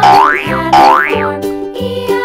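Two quick rising cartoon glide sound effects, about three-quarters of a second apart, over upbeat children's background music.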